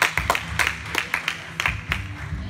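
Hand claps from several people, quick and uneven, with music playing underneath.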